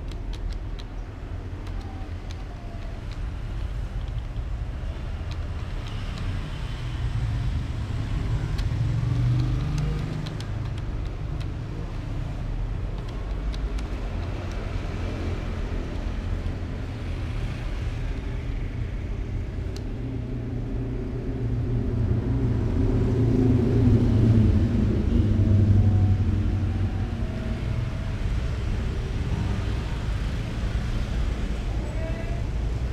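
Steady low rumble of road traffic that swells twice, about a third of the way in and again toward the end, with faint clicks of typing on a computer keyboard.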